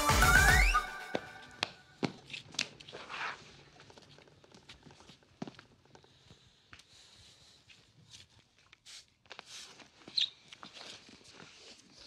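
The dance music stops about a second in, ending on a short rising slide. After it come faint scattered knocks and shuffles of footsteps and a body moving on a hard studio floor.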